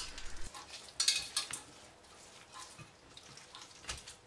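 Faint, wet rubbing of hands massaging an oiled, spice-coated whole beef tenderloin in a stainless steel roasting pan, with a few soft rustles about a second in that fade after about a second and a half.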